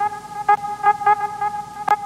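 Edited-in transition sound effect: a steady horn-like pitched tone pulsing about four or five times a second, with one sharp click near the end.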